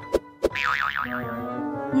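A cartoon 'boing' sound effect, a wobbling tone that starts about half a second in and fades within about a second, over light background music, with two short clicks just before it.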